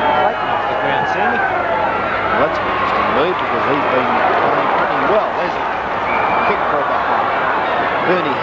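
Football crowd in a stadium cheering and shouting, many voices at once, as a set shot at goal is kicked.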